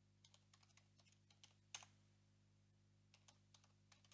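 Faint typing on a computer keyboard: a quick run of keystrokes in the first second and a half, one sharper keystroke a little before the middle, then a few more keystrokes near the end.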